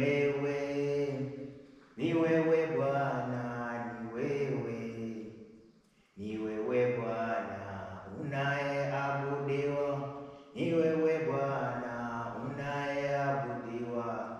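A man singing a Swahili worship song without accompaniment, in long, slow, held phrases with brief breaths between them.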